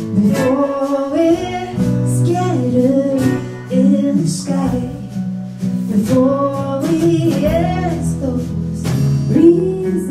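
A woman singing a slow song with acoustic guitar accompaniment, live in a small venue.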